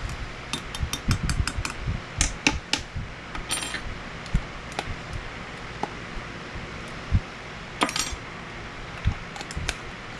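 A metal measuring spoon clinking against a glass measuring cup and a glitter jar as glitter flake is scooped and tapped into heated plastisol: quick strings of light, sharp taps, with a brief rattle and jar-lid clicks later.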